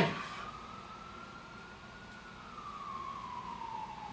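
A faint emergency-vehicle siren in one slow wail: the pitch rises over about two seconds, then falls away.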